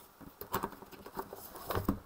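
Pages of a thick spiral-bound ICD-10-CM coding manual being leafed through by hand: a quick run of paper rustles and flaps starting about half a second in, loudest near the end.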